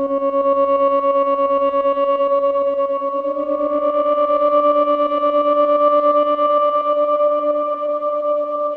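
Ambient electronic music: a sustained synthesizer drone chord with a fast fluttering tremolo. Higher overtones fill in and brighten it from about three seconds in.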